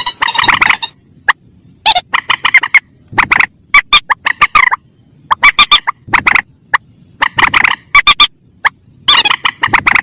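Recorded lure call of mandar rails, adults and chicks together: rapid stuttering calls in repeated bursts of about a second, separated by short pauses, played back loud.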